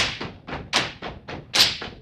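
A step team stepping in unison: rhythmic stomps and hand claps, about five strikes a second, with sharper, louder accents at the start, just under a second in, and near the end.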